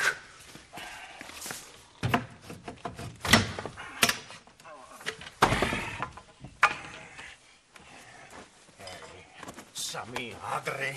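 A scuffle of heavy blows: about five loud knocks and bangs, the one about five and a half seconds in with a longer ringing crash, and lighter knocks in between.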